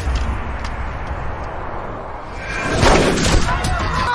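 Film action sound effects: a heavy low rumble, then a sudden, dense burst of gunfire and crashing that builds to its loudest about three seconds in.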